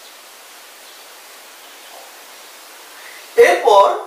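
Steady faint hiss of background noise, then a man starts speaking about three and a half seconds in.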